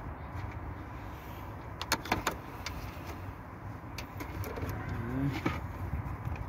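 BMW E39 520i engine running at idle, a steady low rumble, with a quick cluster of sharp clicks about two seconds in and a brief whirring glide near the end.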